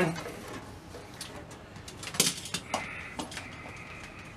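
Quiet handling of a metal instrument cabinet on a workbench: a few light knocks, one sharper a little past halfway. A faint steady high-pitched tone comes in for the last second and a half.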